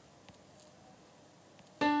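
Quiet room tone, then near the end a single piano note sounds suddenly and rings on, fading: the D above middle C played back by the Dorico notation app as the first note of the score is selected.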